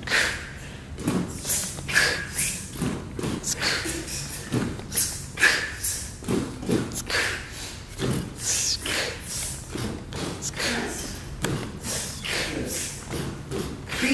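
Vocal beatboxing: a steady rhythm of mouth-made kick-drum thumps and hissing hi-hat and snare sounds in the basic "boots and cats" pattern.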